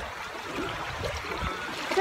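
Small sea waves lapping and washing at the shoreline.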